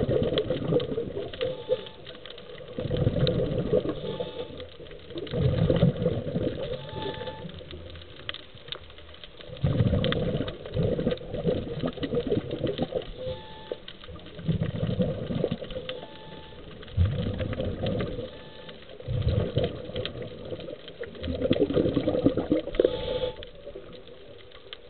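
Scuba diver breathing through a regulator underwater: a gurgling rush of exhaled bubbles every two to three seconds, with quieter stretches between.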